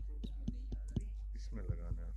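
A series of sharp clicks and knocks from handling at the lectern, picked up by the podium microphone. The loudest knocks come about half a second, a second and near two seconds in. A brief murmured word near the end and a steady low hum run under them.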